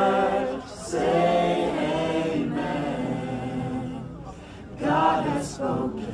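Choir of men and women singing a cappella in held phrases, with short breaths between them: one phrase ends just after the start, a long phrase follows, and a shorter one comes near the end.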